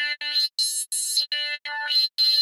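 Omnisphere software synthesizer playing a wavetable patch: the same short note repeated about three times a second. Its tone shifts from note to note, losing its low end and brightening or dulling, as the cutoff of a 24 dB band-pass filter is moved. That filter runs in series after a 24 dB low-pass filter.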